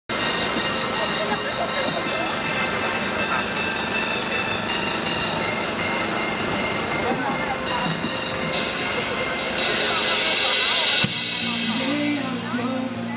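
A crowd of onlookers chattering, many voices overlapping, with busy street background. About a second before the end, music starts playing.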